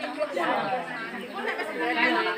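Background chatter: several people talking at once, with overlapping voices and no single speaker clearly in front.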